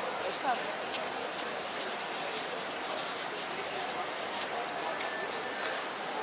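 A steady, even hiss with no clear rhythm or pitch, and faint voices near the start.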